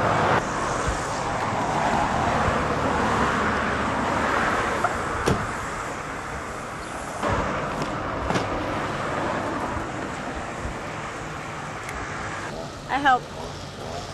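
Steady road traffic noise, a little louder in the first half, with a few sharp knocks partway through.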